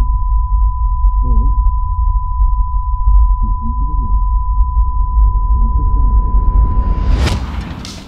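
Layered film sound-design cue: a steady high-pitched ringing tone over a deep rumbling cinematic bass, with muffled, low-pass-filtered dialogue fragments heard as if through a wall. Near the end a reversed cinematic impact swells up as a crescendo, and the whole cue cuts off suddenly.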